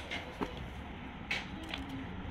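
Low, steady background noise with two brief soft clicks, about half a second in and past the middle.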